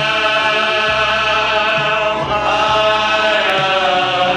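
A men's choir singing a slow worship song in long, held chords with music underneath.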